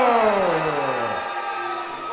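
A ring announcer's long, drawn-out call of a boxer's name through a PA system, one held syllable whose pitch falls steadily until it dies away about a second in.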